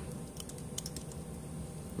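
A handful of faint computer-keyboard key clicks in the first second, over low steady room noise.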